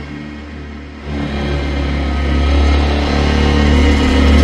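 Tearout dubstep track with a heavy, gritty bass synth. The mix thins out and drops in level for the first second, then the deep bass comes back in about a second in and holds loud.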